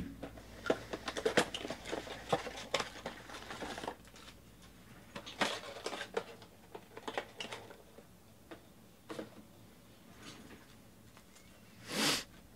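Sealed foil trading-card packs being handled and stacked on a table: clusters of quick crinkles and taps, busiest in the first few seconds, with a short louder rustle at the end.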